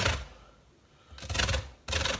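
An orange rubbed up and down a metal box grater to take off its zest, giving short scraping strokes: one at the start, a pause of about a second, then two more near the end.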